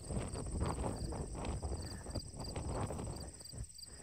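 Irregular footsteps on concrete, with a low rumble of wind on the microphone; the steps thin out near the end.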